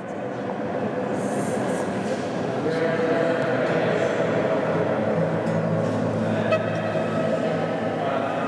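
Indistinct voices blurred into a continuous murmur by the long echo of a barrel-vaulted stone room, growing louder over the first few seconds.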